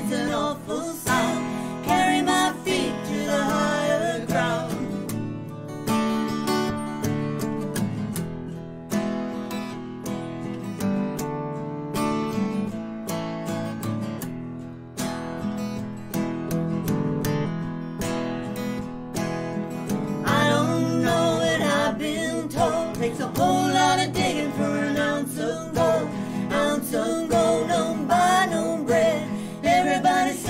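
Two Martin acoustic guitars strummed together while two women sing. The voices drop out about six seconds in for a guitar-only passage and come back about twenty seconds in.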